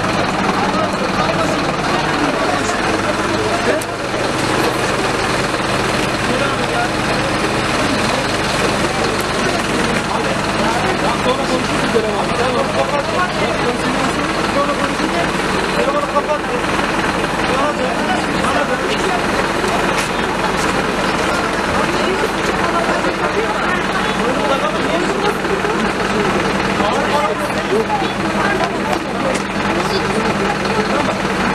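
Many voices talking and calling at once, over the steady hum of an idling vehicle engine.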